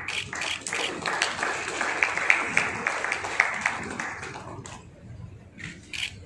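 Audience applauding with many hands clapping, swelling to its loudest in the middle and dying away about four and a half seconds in, leaving a few scattered claps.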